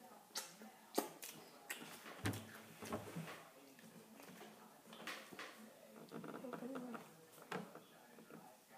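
Faint, irregular crunches of a person chewing a crunchy cheese cracker, with a faint murmur of voice late on.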